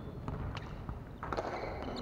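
Echoing gymnasium ambience with scattered footsteps on the wooden floor and a volleyball striking or bouncing off the floor about a second and a third in.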